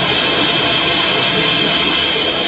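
Rapid gunfire picked up by a business's surveillance-camera microphone, the shots so dense and distorted that they blur into one steady, loud crackle.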